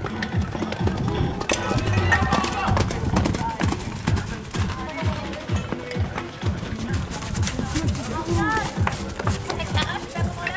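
A pony cantering on a sand arena, its hoofbeats heard under background music and people's voices.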